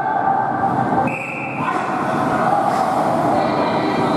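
Ice hockey skates scraping and carving on the rink ice as players battle for the puck, mixed with the echoing din of the arena. A short high whine sounds about a second in.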